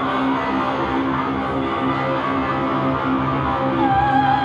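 Live-electronic music: layered sustained tones over a pulsing low drone. Near the end a woman's voice comes in with a high held note.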